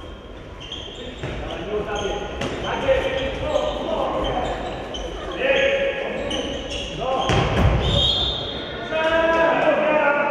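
Handball match play in a large, echoing sports hall: the ball bouncing on the wooden court, and players calling and shouting. A heavier thud stands out about seven and a half seconds in.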